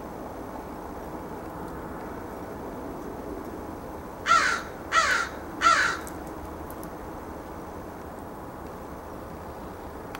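A crow cawing three times in quick succession, starting about four seconds in, over a faint steady background hum.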